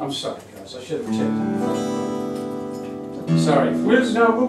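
Acoustic guitars strum a chord about a second in that rings out and slowly fades, then strum again near the end.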